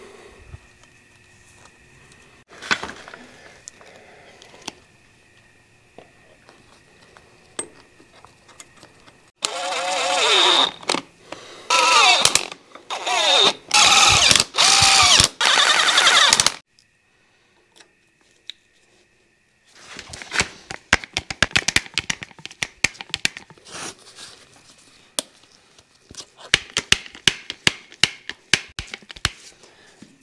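Cordless driver run in several short bursts of a second or two each, its motor pitch rising and falling, driving bolts into the front PTO pulley hub of a Caterpillar D4 bulldozer. Later a long run of quick, irregular metallic clicks follows.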